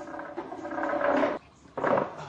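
A loud, drawn-out roar-like cry lasting about a second and a half, then a second shorter one near the end.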